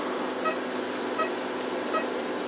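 Steady equipment hum with a short electronic beep repeating about every three-quarters of a second.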